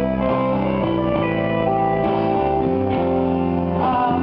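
Live band playing a song, with electric guitar strumming over sustained chords and bass.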